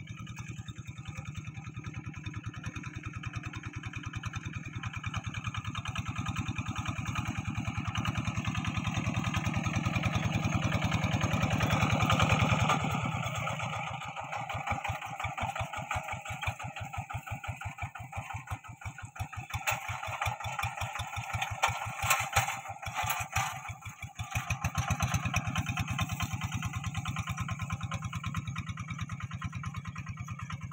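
Quick two-wheel hand tractor's single-cylinder diesel engine running under load as its cage wheels pull through a wet paddy, cutting furrows. It grows louder as the tractor comes close, is loudest about twelve seconds in, then settles to an even beat of firing pulses as it moves away. A few sharp knocks come in about two-thirds of the way through.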